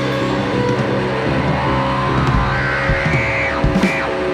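Live rock band of electric guitars, bass and drums holding loud, droning sustained notes, with sliding, whining guitar tones and a few drum hits in the last second or so, as the final song winds down.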